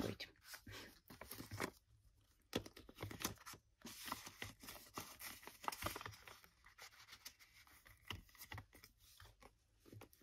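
Paper banknotes rustling as they are handled and sorted, with the crinkle of a clear plastic binder pocket: many quiet, irregular crackles.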